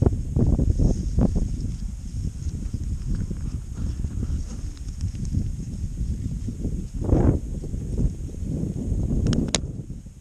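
Wind buffeting the handheld camera's microphone in a low, uneven rumble, with irregular footsteps crunching in snow.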